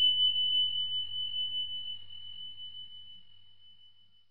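A single high bell-like ding sound effect ringing out and fading away, marking the end of the answer countdown and the answer reveal.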